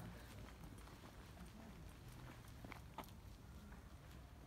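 Near silence: a faint outdoor background with a few soft footsteps, the clearest about three seconds in.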